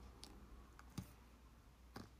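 Near silence with a low room hum, broken by a few small, sharp clicks: the clearest about a second in and another near the end.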